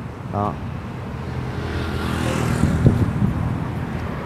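Traffic passing on the street: a motor vehicle's engine hum swells, is loudest about three seconds in, then eases off.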